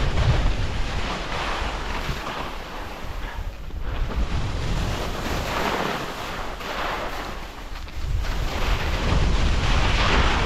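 Wind buffeting the microphone on a fast ski descent, with skis hissing and scraping over chopped-up snow in swells that rise and fade with each turn.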